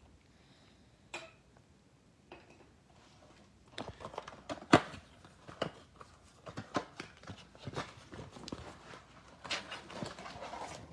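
A cardboard trading-card box being handled and torn open by hand, with the pack inside it being pulled out. From about four seconds in there is a string of small clicks, taps and crinkles, the sharpest just before the five-second mark.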